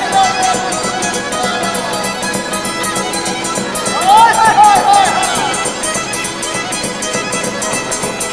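Romanian Maramureș folk music: a fiddle and a strummed guitar playing a steady tune. About four seconds in, a man's voice joins with rising and falling sung phrases.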